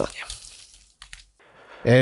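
Speech only: a man's voice trails off at the start, then a short quiet pause with one faint click, then a man begins reading aloud near the end.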